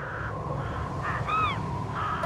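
Channel intro sting: a low rumbling whoosh under the fading ring of a plucked-string chord, with one short bird call that rises and falls about a second and a half in.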